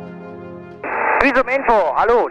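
Background music with steady sustained tones; a little under a second in, an aviation radio channel opens with a burst of hiss and a man starts a radio call, his voice thin and narrow-band as heard over the aircraft radio.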